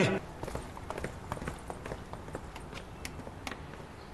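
Quick footsteps on a hard floor, about four steps a second, growing fainter as someone walks away.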